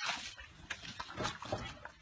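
A bull in a wooden handling crush: a short breathy burst at the start, then a run of light knocks and scrapes as he moves about.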